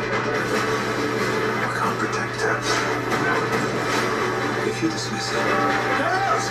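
TV series trailer soundtrack: music at a steady level with spoken lines mixed in.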